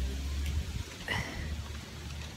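Wind buffeting the microphone: a low rumble throughout, with a brief faint sound about a second in.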